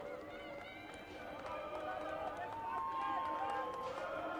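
Voices talking and calling out over a steady open-air stadium background, with one higher voice drawn out for about a second near the end.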